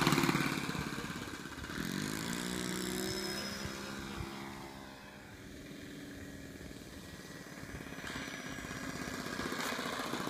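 Engine of a Seagull Space Walker RC model airplane in flight. It is loud as the plane passes close at the start, its pitch rises around two seconds in, it fades to its quietest about five seconds in as the plane flies far off, then it grows louder again as the plane comes back low.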